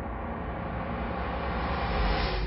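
Steady low rumbling drone, dense and even with no beat, swelling slightly near the end.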